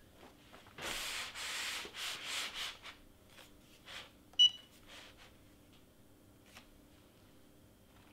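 Hands rubbing a protective sheet flat over a sweatshirt for about two seconds. A moment later a Cricut EasyPress heat press gives one short electronic beep as its pressing cycle starts.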